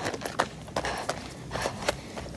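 Running footsteps crunching on gravel, an uneven step every few tenths of a second.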